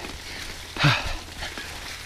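Mountain bike tyres rolling over dry fallen leaves on a steep climb, a steady rustling hiss. A brief vocal sound from the rider comes a little under a second in.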